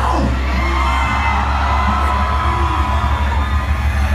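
Heavy metal band's amplified guitars and bass holding one low note, with a large crowd whooping and yelling over it.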